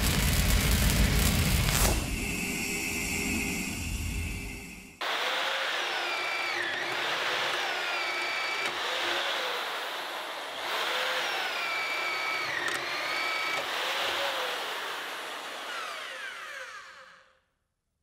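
Corded hammer drill boring a spade bit down through nail-studded lumber. The motor's pitch dips and recovers again and again as the bit bites and frees. It opens with the loud tail of an intro whoosh and boom, and cuts off just before the end.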